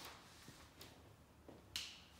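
Near silence with a few faint clicks as a whiteboard marker is handled and capped, then a short hiss near the end.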